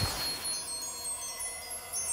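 A shimmer of chimes from a TV station ident: a soft hit at the start, then several high, clear tones ringing on and slowly fading.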